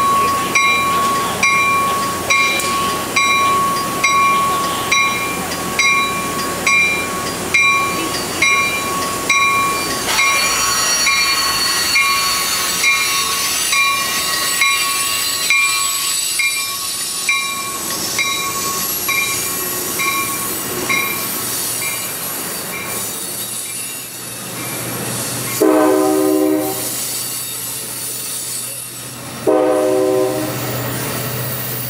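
An Amtrak California passenger train pulls out past the platform, a bell ringing about twice a second as the bilevel cars roll by, with a steady wheel-on-rail hiss and screech. Near the end a deep diesel engine drone builds, and the locomotive's horn sounds two blasts, the second still going at the end.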